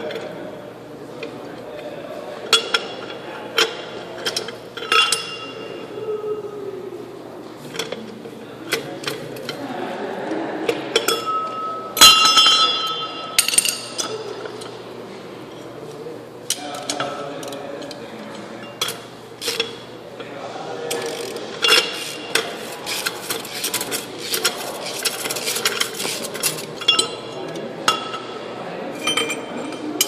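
Steel hand tools clinking and clicking against the lock nuts and jam nut of a heavy-truck wheel hub as the nuts are loosened and taken off. The sounds are scattered knocks and clicks, with one loud metallic clang about twelve seconds in that rings briefly, and a busier run of clicking in the second half.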